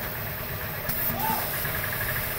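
Steady mechanical running noise, like a motor or engine, with faint voices.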